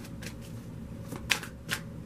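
Deck of cards being shuffled in the hands: a string of soft flicks and snaps, with two sharper snaps past the middle.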